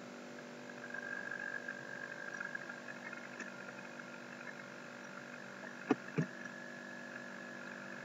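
Faint steady electrical hum of the recording's background: room tone with a few held tones. Two short clicks come close together about six seconds in.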